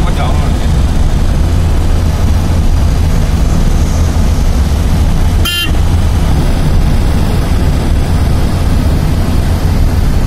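Steady low rumble of a vehicle's engine and road noise heard from inside the cab while driving on a highway, with one short horn toot about halfway through.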